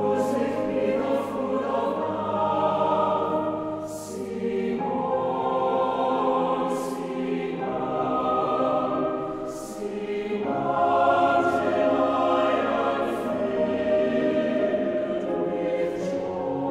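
Large mixed choir singing sustained chords in long phrases, with a short breath between phrases about four to five seconds in and again about ten seconds in, and crisp sung 's' consonants.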